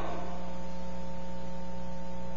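Steady electrical mains hum: a constant low buzz with a few fixed higher tones over a faint hiss, unchanging throughout.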